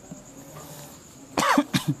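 A man coughing: a short cluster of coughs about a second and a half in, after a quiet pause.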